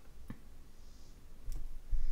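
Apple Pencil's plastic tip on an iPad's glass screen: a few light clicks as the tip touches down, with faint scratching as it slides along a line.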